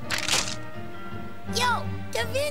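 Cartoon soundtrack: background music, with a sharp noisy swish just after the start and then swooping sound effects that glide down and back up in pitch about one and a half seconds in.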